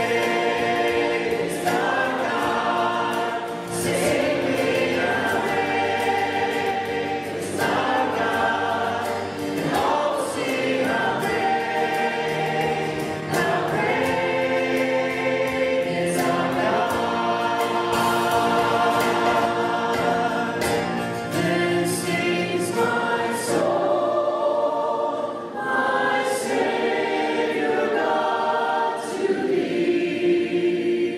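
A choir singing a hymn in phrases a few seconds long.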